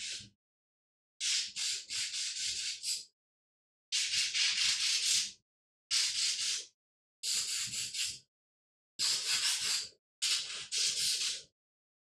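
Compressed air sprayed in a series of short hissing bursts, about seven of them with brief pauses between, blowing dust out of a PC part.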